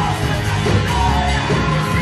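Women's voices singing a Spanish-language worship song through microphones over amplified musical accompaniment with a steady bass line, loud and continuous.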